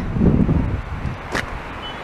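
Gusty wind rumbling on the microphone, mixed with traffic noise from a wet road. A single sharp click comes about one and a half seconds in.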